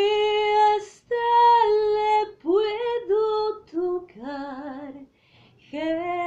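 A woman singing solo and unaccompanied, in long held notes broken into short phrases with brief pauses between them.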